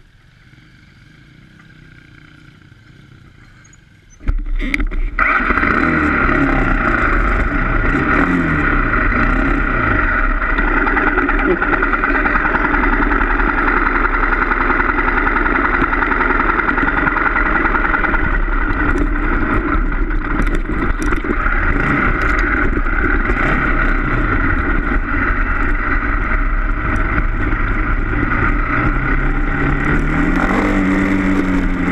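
Dirt bike ridden along a rough dirt trail, heard from a camera mounted on the bike: the engine comes in suddenly about four seconds in and runs on loudly, its pitch rising and falling with the throttle, under heavy wind and trail noise on the microphone.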